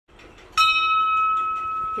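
A bell struck once about half a second in, then ringing on with a steady high tone that fades slowly.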